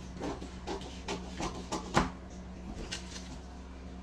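Scissors snipping through pattern paper: a run of short cuts, the loudest about halfway through, then a few fainter ones as the neckline of the paper pattern is cut out.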